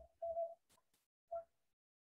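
Near silence, broken by two short, faint hum-like voice sounds held on one pitch, about a quarter second in and again a little past the middle, with a couple of faint clicks between them.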